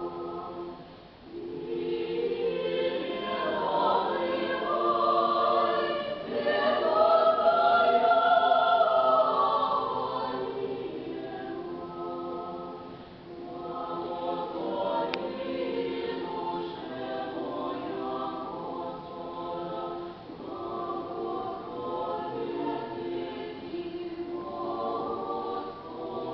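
Small mixed choir of men's and women's voices singing Russian Orthodox sacred music a cappella, in sustained chords. After a short break about a second in, the singing swells to its loudest a few seconds later, then falls back to a softer passage.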